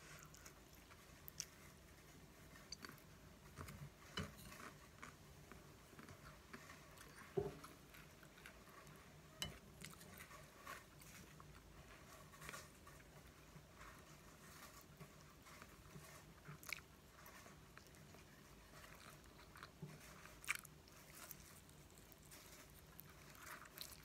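Faint chewing and mouth sounds of a person eating fried noodles with chopsticks, with scattered soft clicks.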